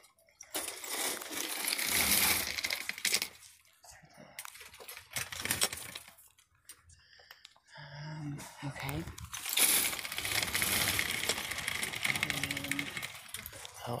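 Wire shopping cart rattling as it is pushed along a hard store floor, in stretches of a few seconds with short pauses between.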